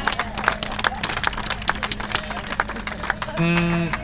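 Crowd applauding with many quick, irregular claps over a steady low hum. A single voice holds one note briefly near the end.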